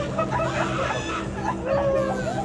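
Short, clucking, chicken-like calls with bending pitch, heard over a steady low drone.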